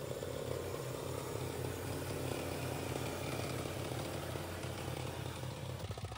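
KAMCO power reaper's 170F single-cylinder diesel engine running steadily under load while the reaper cuts standing rice.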